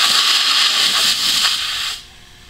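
Compressed air hissing out of a tyre's valve stem through a J-Flater screw-on deflator valve, which is loosened a twist to air the tyre down. The hiss is loud and steady and stops suddenly near the end.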